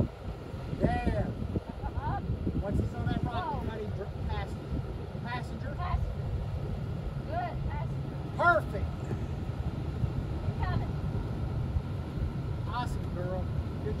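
Lexus GX460's 4.6-litre V8 running low and steady as the SUV crawls up a rock ledge, with short voice-like calls over it.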